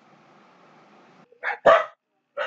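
A dog barks twice in quick succession near the end, over a faint steady hum.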